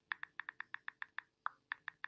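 A rapid series of short, high-pitched chirps, about six a second, with one longer, lower chirp about halfway through, over a faint steady hum.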